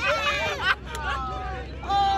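Several people shouting and calling out over a background babble of voices, with long drawn-out calls in the second half. A single sharp click a little after a third of the way in is the loudest sound.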